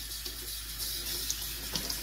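Kitchen faucet running steadily into a plastic bucket while freshly dyed yarn skeins are rinsed by hand in the stream.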